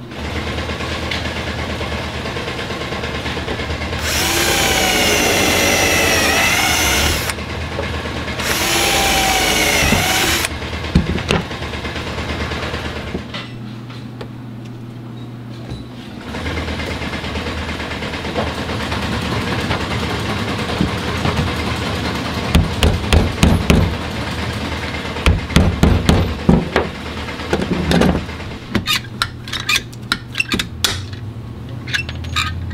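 A power drill runs in two bursts of about three and two seconds, its pitch dipping and recovering under load, over a steady low hum. Later comes a run of sharp clicks and knocks as floor-mat grommet parts are pressed together over a metal jig.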